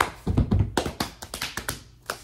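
Rapid, irregular hand taps and thumps, a quick flurry of small knocks acting out the little scuffling movement noises of a struggle heard through a cell wall.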